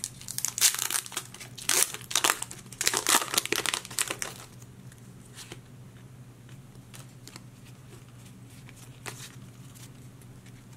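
Foil booster-pack wrapper of a Pokémon trading card pack crinkling and tearing open by hand, in a run of bursts over the first four seconds or so. After that only a few faint ticks as the cards are handled.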